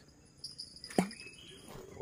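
Quiet river ambience: a faint, steady high-pitched insect buzz, broken by one sharp click about a second in.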